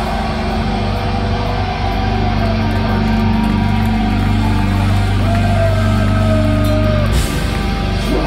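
A heavy metal band playing live through a PA, in a loud instrumental passage of sustained low electric guitar and bass chords with a high guitar line gliding above them. The sound dips briefly about seven seconds in, then the full band comes back in.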